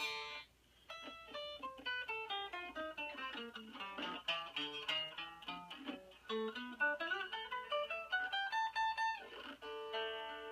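Taylor electric guitar played unplugged, in quick single-note runs. After a short pause, the notes fall in pitch for a few seconds, then climb back up, ending on a ringing chord.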